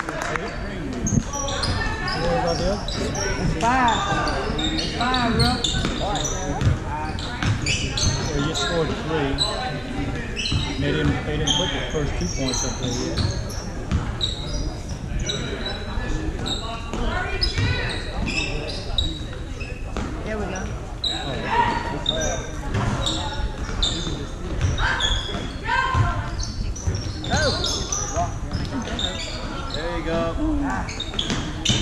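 Basketball being dribbled on a hardwood gym floor, with sneakers squeaking and voices from players and spectators echoing in a large gym.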